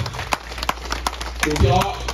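Crowded banquet hall, with scattered sharp clicks and taps and a short burst of voice about three-quarters of the way through.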